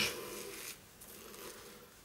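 Omega S-Brush Pro synthetic shaving brush working over Cella soft shaving soap in its tub while it is loaded, a faint scratchy rustle that fades about three-quarters of a second in, leaving faint room hum.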